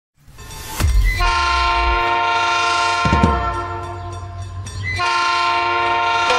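Train horn sound effect: two long blasts of several steady pitches over a low train rumble, the first about a second in and fading, the second starting near the end.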